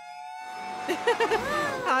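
A steady held tone from the cartoon's soundtrack, with a character giggling over it from about a second in.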